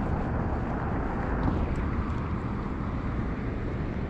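Steady rushing outdoor noise with no single sound standing out, the kind of wind-and-traffic wash a body-worn camera picks up while walking across a parking lot.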